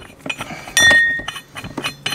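Metal clinks from the steel primary clutch and its puller tool as the puller is worked by hand to free the stock primary clutch of a Can-Am Outlander 650. About a second in comes one loud, clear ringing ping, the loudest sound here.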